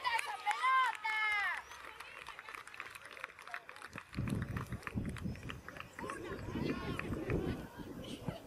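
Several high-pitched shouts right after a goal, rising and falling cries packed into the first second and a half. Faint clicking follows, and from about four seconds a low rumbling noise.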